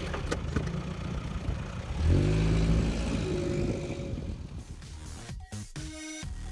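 VW Golf Mk2 engine running just after starting, with a rise in revs about two seconds in. Music comes in near the end.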